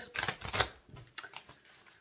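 A deck of oracle cards being handled: a quick run of light clicks and snaps in the first half, then a few sparser ones.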